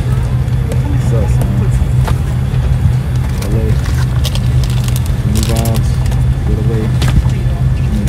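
Steady low drone inside an airliner cabin, with other passengers' voices faintly in the background and a few clicks.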